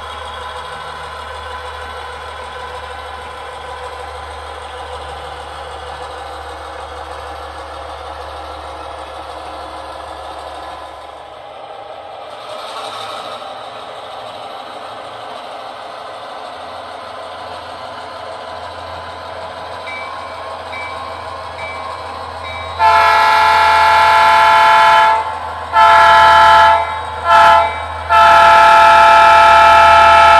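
HO-scale Southern Pacific diesel locomotive's onboard sound system: the diesel engine running steadily, then the horn sounding loudly near the end in the grade-crossing pattern of long, long, short, long.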